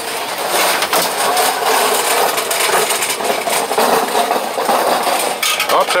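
Crepe batter being spread across a hot round crepe griddle with a wooden spreader: a steady hiss with scattered clicks and clinks.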